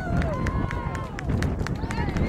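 Voices calling and shouting across an outdoor soccer field, drawn-out and wavering in pitch, with many short sharp clicks throughout and a low rumble underneath.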